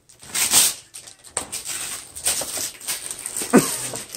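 Wrapping paper being torn and crumpled, with a loud ripping burst about half a second in and crackling rustles after it. Near the end comes a brief squeaky cry that rises and falls.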